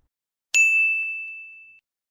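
A single high chime sound effect starts suddenly about half a second in, rings on one clear tone and fades away over about a second. It is the ding that marks the quiz answer being revealed.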